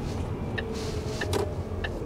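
Lorry engine running at low speed, heard from inside the cab as a steady low rumble, with a few light clicks and a brief soft hiss just under a second in.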